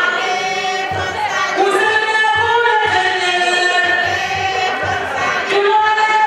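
A woman singing into a microphone over a sound system, with other women's voices singing along in chorus, over a low beat that repeats regularly.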